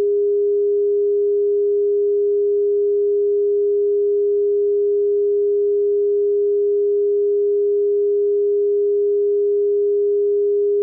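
Audio line-up test tone laid with colour bars and slate at the head of a broadcast tape segment: a single steady, pure mid-pitched tone, unbroken and at a constant level.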